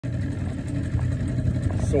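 Motorboat engine running steadily at low speed, a constant low rumble.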